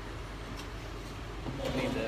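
A voice speaking briefly near the end, over a steady low outdoor rumble.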